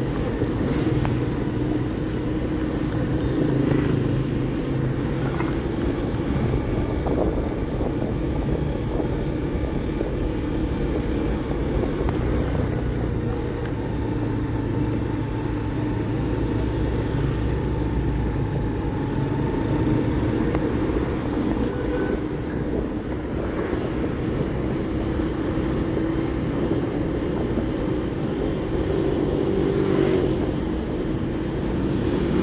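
Motorcycle engine running under way in city traffic, a steady low drone whose pitch shifts a little with the throttle, with the noise of surrounding traffic.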